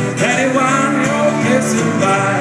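Live acoustic country-blues music: acoustic guitar strumming, with a harmonica played into a microphone carrying a wavering, bending melody.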